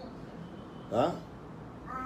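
A man's single short questioning "hein?" about a second in, rising sharply in pitch; otherwise only faint room tone.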